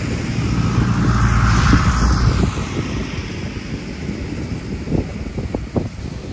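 Wind buffeting the microphone over surf breaking on the shore, swelling loudest about a second or two in and easing after, with a few short crackles near the end.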